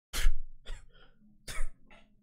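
A person coughing: short harsh coughs in two groups about a second apart.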